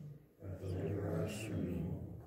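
A man's low voice speaking in a slow, steady cadence, with a short break about a third of a second in.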